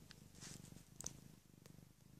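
Domestic tabby cat purring faintly, with a small click about a second in.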